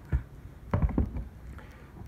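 Handling noise: a few dull knocks and bumps against a plywood loudspeaker cabinet, the loudest cluster about a second in.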